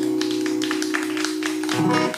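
Final chord on acoustic guitars ringing out, then damped by hand with a low thump near the end. Scattered sharp taps sound throughout.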